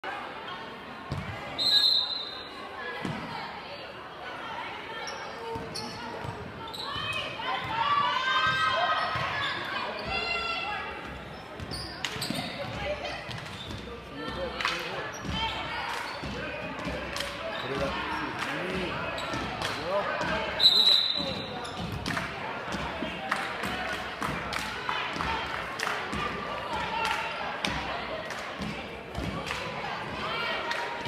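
Gym sounds of a girls' basketball game: a basketball bouncing on the hardwood floor and voices calling out, echoing in the large gym. Two short, loud whistle blasts come about 2 seconds in and about 21 seconds in.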